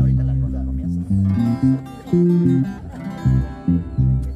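Acoustic guitars strumming chords over an electric bass playing a moving line of short notes. The bass notes are the loudest part.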